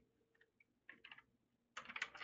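Faint computer keyboard typing: a few separate keystrokes around the middle and a quick run of them near the end.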